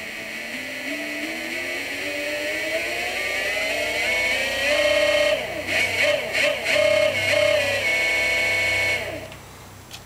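Golden Motor BLT-650 brushless electric motor spinning with no load. Its whine rises in pitch as it speeds up over about five seconds, wavers for a moment, then holds steady. The sound cuts off about nine seconds in.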